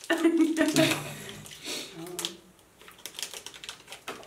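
Plastic chocolate-bar wrapper crinkling in a string of small irregular crackles as it is opened, with a person's voice laughing and humming in the first two seconds.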